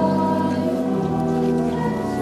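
Many voices singing a hymn together in long held notes, the melody stepping to a new note about once a second.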